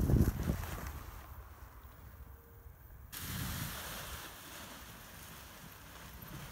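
Wind buffeting the microphone in gusts that die away over the first second, then a steady rush of wind hiss that comes in suddenly about three seconds in.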